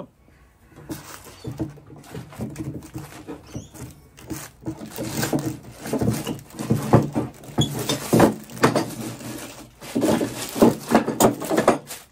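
Steel bar clamps with wooden handles being loosened and taken off a clamped stack of boards to open a plastic-sheet press: an irregular run of metallic clicks, clanks and wooden knocks, busier in the second half.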